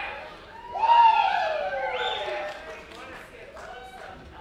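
A single long vocal whoop about a second in, sliding down in pitch for about a second and a half, the cheer of someone in the audience after the song.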